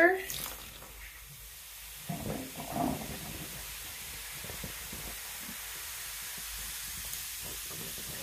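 Vinegar poured onto baking soda in a bathtub drain, the mixture fizzing with a steady hiss. A brief louder splash of pouring comes about two to three seconds in.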